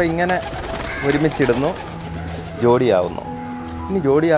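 Domestic pigeons cooing in low, drawn-out coos, under a man's talking voice.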